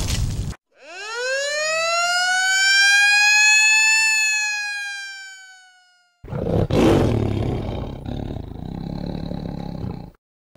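A siren-like wail that rises quickly in pitch, holds, and slowly winds down over about five seconds. It is followed by a loud, rough noisy blast that settles into a steady rumble.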